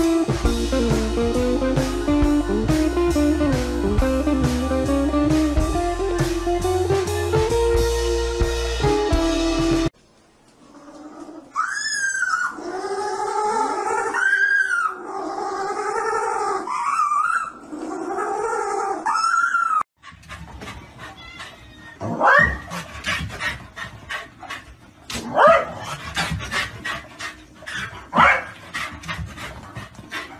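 Guitar music for about the first ten seconds, then a series of pitched calls, each rising and falling. In the last third come a dog's short, sharp rising yelps and whines.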